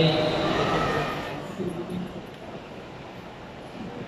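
Announcer's voice over a public address system, its last words trailing off into the hall's echo about a second in, then the low murmur of a crowd in a large indoor hall.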